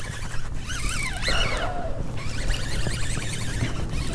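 Wind rumbling on the microphone over open water, with a brief wavering high-pitched sound about a second in.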